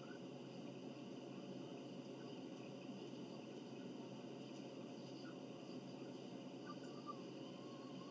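Faint steady room tone: a low hiss with a light constant hum, with no distinct sound events.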